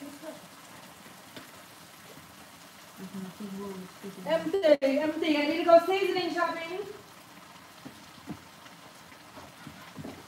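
Food sizzling faintly in a pan on the stove, with a few light utensil clicks at a rice cooker pot. In the middle a person's drawn-out, sing-song voice runs for about three seconds and is the loudest sound.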